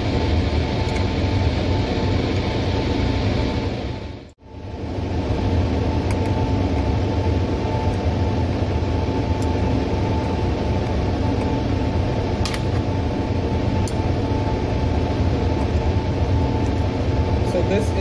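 Laminar airflow cabinet's blower running with a steady rush of air and a hum; the sound drops out for a moment about four seconds in and comes back unchanged.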